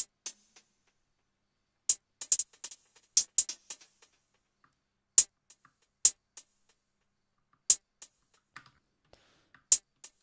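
Electronic hi-hat sample played as single sharp hits, about ten ticks at uneven spacing with some in quick pairs, each trailed by faint quick repeats from a delay effect.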